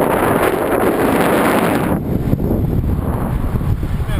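Wind buffeting the microphone of a camera on a moving road bike: a loud, steady rushing noise that eases a little about two seconds in.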